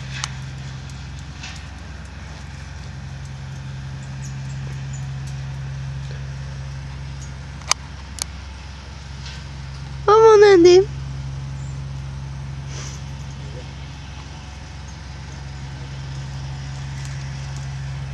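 An Ardennes draft horse whinnies once, loud and quavering, for under a second about halfway through, over a steady low hum; two sharp clicks come shortly before it.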